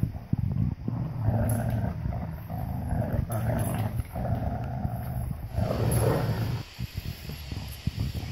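Dogs play-growling in long, low rumbles while a yellow Labrador and a Rottweiler tug a rope toy between them. The growling stops near the end, leaving a few light clicks.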